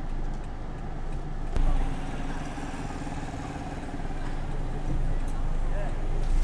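Steady low hum of a car's running engine heard from inside the cabin, with a sudden change in the drone about a second and a half in.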